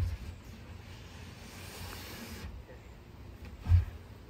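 A wooden coop frame of studs and OSB sheathing being set down onto a wooden base platform: a dull thud at the start and a heavier, deeper thud near the end, with a soft hiss in between.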